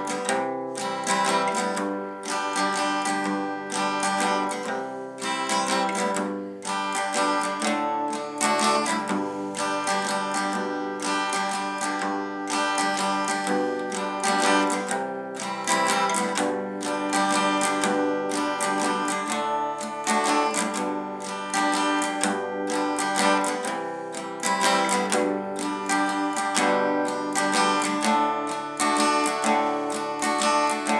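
Steel-string acoustic guitar strummed in a steady repeating pattern over open chords, with regular down-and-up strokes and chord changes along the way.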